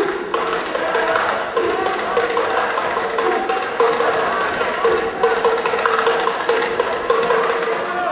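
Music with a quick, tapping percussive beat over a repeated held note, with some voices.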